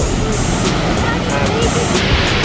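Steady rushing of a waterfall pouring into a pool, with background music playing over it.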